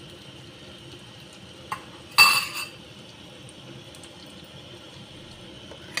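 A faint click, then about two seconds in a single sharp metallic clink that rings briefly: a metal fork knocking against cookware.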